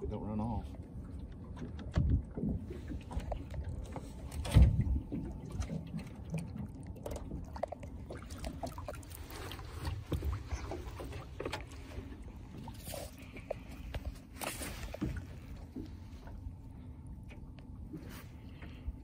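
Handling noise in a small fishing boat: a low rumble with a few knocks against the boat, the loudest about four and a half seconds in, and water splashing and dripping as a jugline float and its line are lifted out and hauled in by hand.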